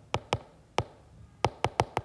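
Stylus tip tapping on an iPad's glass screen while handwriting a word: about seven short, sharp taps at uneven intervals, several bunched close together in the second half.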